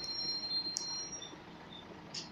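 Cabin sound inside a Scania L94UB single-decker bus: a low steady hum from its diesel engine, with faint high-pitched whines and one sharp click a little under a second in.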